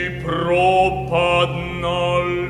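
A man's voice singing a slow, chant-like melody in a choral-orchestral recording, the notes sliding up into pitch, over a low note held steadily underneath.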